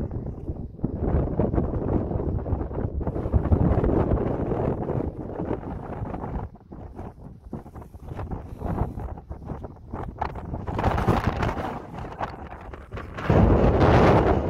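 Wind buffeting the microphone outdoors: a low rushing noise that comes and goes in gusts, weaker through the middle and loudest near the end.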